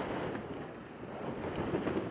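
Wind buffeting the microphone outdoors, an uneven rumbling rush that swells and eases, with a few faint light knocks in the background.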